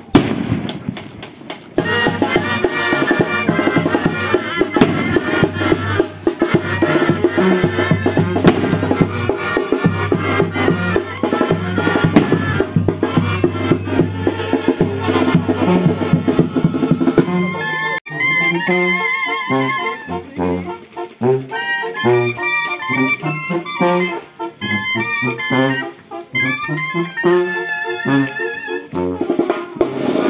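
Brass band music with drums and trumpets, played loudly. A sharp bang comes right at the start. About 17 seconds in, the music changes to clearer, separate melodic phrases.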